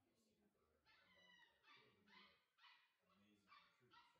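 Bordoodle puppy giving a run of faint, high-pitched whimpers and yips, short calls about half a second apart.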